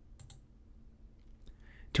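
A computer mouse clicking: a quick pair of ticks a fraction of a second in, as the button is pressed and released.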